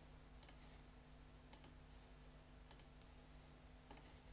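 Faint pairs of sharp double clicks, four pairs about a second apart, over a low steady hum in an otherwise near-silent room.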